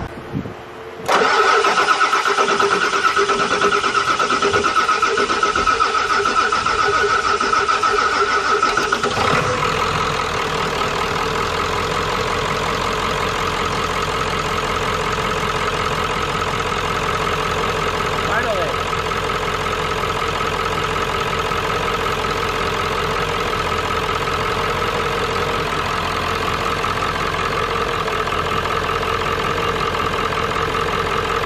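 Ford 7.3 Powerstroke V8 diesel cranking on the starter with a steady whine for about eight seconds, slow to fire while the high-pressure oil pump rebuilds rail pressure after an injector change. About nine seconds in the engine catches and settles into a steady idle.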